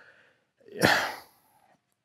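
A man's single sharp exhale about half a second in, fading away over about a second.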